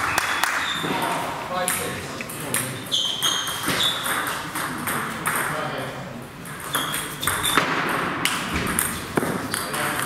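Table tennis balls clicking off bats and tables, a scatter of short sharp ticks with a brief ringing ping, over voices chattering in a reverberant sports hall.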